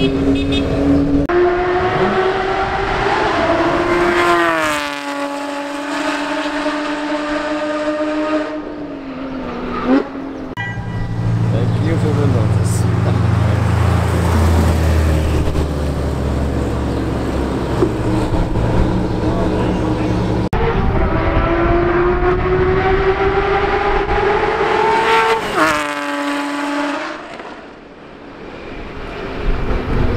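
Race-prepared sports car engines in a run of short clips: an engine accelerating with its pitch rising, then a sudden drop in pitch and a steadier run. A deep low rumble follows from about ten to twenty seconds in, then another rising pull that cuts off abruptly a few seconds before the end.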